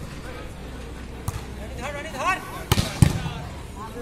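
A volleyball struck three times in a rally, short sharp slaps of hands and arms on the ball, the loudest near the end, with a player's shout between the hits.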